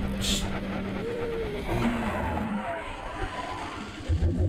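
A deep, noisy rumbling roar from a television soundtrack: the sound effect of a huge dragon growling and breathing as it is woken, with faint gliding tones over it.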